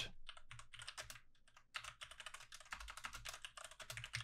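Fast typing on a computer keyboard: a faint, dense run of key clicks with a brief pause a little under two seconds in.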